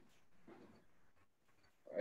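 Near silence during a pause in speech, with one faint, short sound about half a second in.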